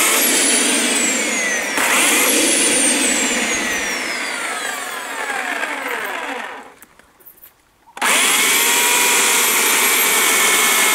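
Bosch AKE 40 S electric chainsaw revving up, then its whine falling steadily in pitch as the motor bogs down cutting hard, dry black locust, until it stops about seven seconds in. About a second later it starts again and runs at a steady high pitch.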